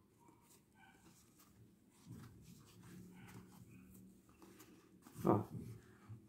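Quiet room with faint handling noise of a crochet hook and yarn being worked around a foam sole, and one short, louder sound about five seconds in.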